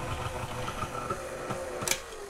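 Electric tilt-head stand mixer running steadily, beating powdered-sugar frosting in a steel bowl, with a sharp clink near the end.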